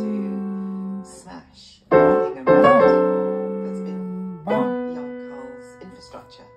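Yamaha acoustic piano: chords struck and left to ring out. A new chord comes about two seconds in, another half a second later, and a third about four and a half seconds in, each dying away.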